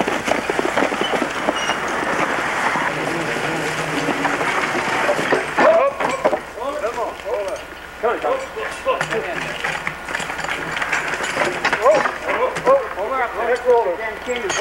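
Indistinct voices talking over a steady background noise; the voices come through more clearly in the second half.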